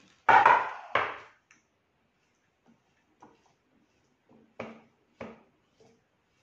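Thermomix plastic lid knocking twice as it is set down on the stone counter, loud, about half a second and a second in. A few lighter knocks follow as the spatula works in the stainless-steel mixing bowl, pushing the chopped mixture down from the sides.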